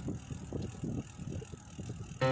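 Bicycle rolling along a paved path, with an irregular low rumble and rattle from the tyres and frame.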